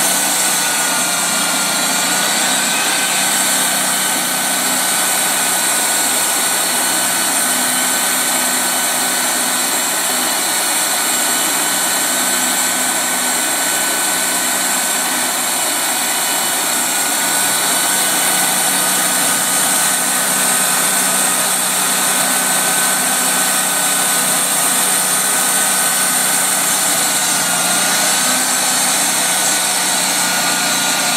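Sawmill running steadily while cutting a log: a loud, even machine noise with a steady high whine over it, dipping slightly in pitch about a second in and again near the end.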